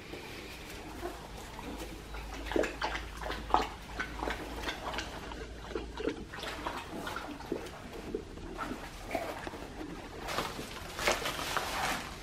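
Wood-shaving bedding rustling and crackling in short, irregular bursts as young puppies crawl through it, with a louder burst of rustling near the end.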